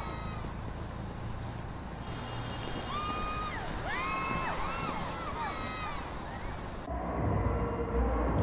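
Music video soundtrack playing through the reaction: a run of short sliding notes that each rise and fall over a low background hum, changing near the end to a deeper bass as the scene cuts.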